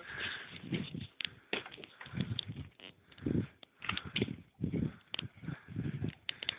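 Irregular cracks, creaks and scuffs from a dead tree trunk and its bark as a climber moves up it, with scattered sharp clicks: the dead wood crackling under his weight.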